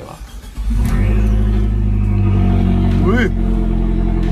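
Fiat 500 Abarth's 1.4-litre turbocharged four-cylinder, breathing through a Record Monza active exhaust, starting up with a sudden loud burst under a second in. It then settles into a steady, loud idle, heard from inside the cabin.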